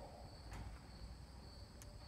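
Near silence: faint background room tone with a thin, steady high-pitched whine and a low rumble, and one faint tick near the end.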